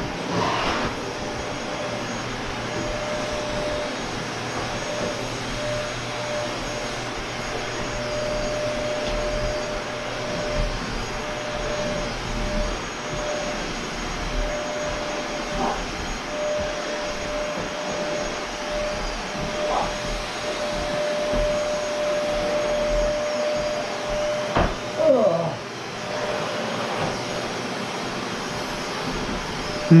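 Canister vacuum cleaner running steadily as it is pushed over the floor: a rushing air noise with one steady tone on top. The tone wavers briefly and the sound gets louder for a moment about 25 seconds in.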